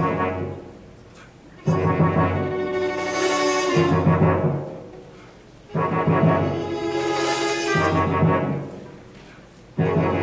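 A pit orchestra with timpani and brass plays a short repeated phrase. Each time it comes in suddenly and loudly, holds for a couple of seconds and dies away. This happens about every four seconds, three times in all.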